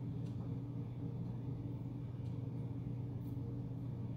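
Room tone: a steady low hum with a few faint ticks.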